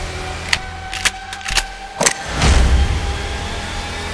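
Trailer sound design: a low rumbling drone under a held tone, struck by four sharp hits about half a second apart, then a swelling whoosh with a deep rumble about two and a half seconds in.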